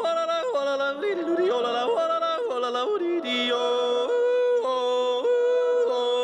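A single voice yodeling, leaping back and forth between a low chest note and a high falsetto note, ending on a long held high note.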